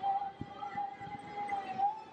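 A single steady held tone, wavering slightly and rising briefly near the end, with a soft low thump under half a second in.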